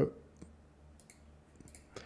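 A few faint, separate computer mouse clicks over a steady low hum.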